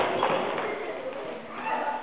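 Children's voices, a jumble of chatter and calls, dipping slightly in the middle and picking up again near the end.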